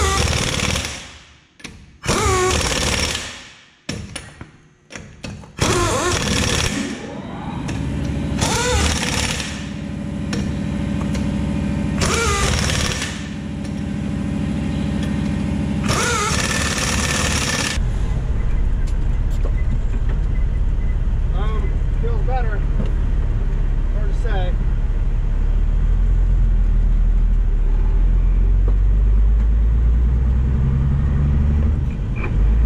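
Impact wrench on a truck wheel's lug nuts, run in several short bursts of about a second, each starting with a rising whine. About eighteen seconds in, this gives way to the steady low rumble of the truck's diesel engine running.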